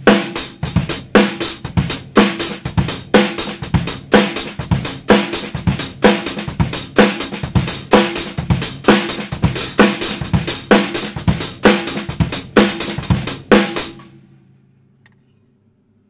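Drum kit playing a basic beat: steady hi-hat strokes at about four a second, accented on beats two and four, over bass drum and snare. It stops about two seconds before the end and rings out.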